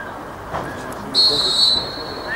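A referee's whistle blown once in a short, shrill blast about a second in, over faint players' voices on the pitch.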